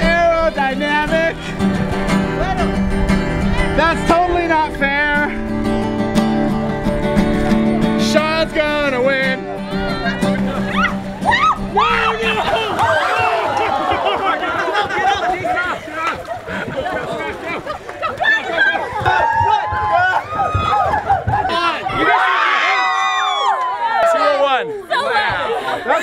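Background music with held notes for about the first half, with a few shouting voices over it. The music then fades out and a crowd of young people shout, cheer and laugh over each other.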